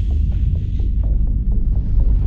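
Soundtrack music for an animated promo: a loud, steady deep bass drone with faint quick ticks above it.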